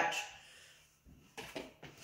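A few short, faint knocks and rustles near the end as a measuring cup is dipped into a canister of quick oats.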